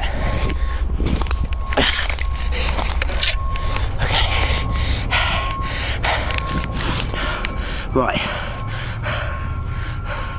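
A person breathing hard while pushing through undergrowth, with leaves and branches crackling and brushing past the camera, over a steady low rumble of handling. A single spoken word comes near the end.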